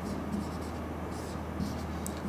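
Marker pen writing on a whiteboard: faint, scattered scratchy strokes as an equation is written, over a steady low hum.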